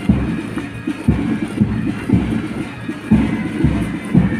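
Marching music with strong low beats about twice a second, setting the step for a parade.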